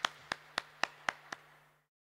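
Hand claps at an even beat of about four a second, growing fainter and stopping shortly before the end, over a faint steady hum from the sound system.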